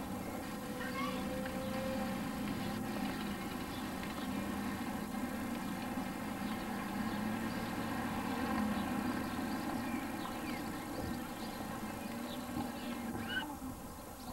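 Outdoor street ambience: a steady low hum with faint, short high-pitched calls scattered through it.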